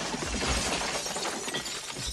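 Shattered glass falling and tinkling, many small sharp clinks over a noisy haze that slowly dies away after a blast.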